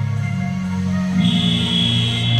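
Background music with sustained low notes; a high held tone joins about a second in.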